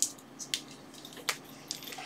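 A few faint, sharp clicks and taps over quiet room hiss: small objects being handled on a workbench.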